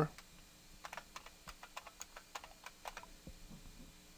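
Computer keyboard being typed on as a password is entered: a quick run of faint key clicks starting about a second in and lasting about two seconds, with a few softer clicks after.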